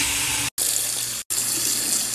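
Bathroom sink faucet running, its stream splashing into the basin as a steady rush. The sound is broken twice by short gaps.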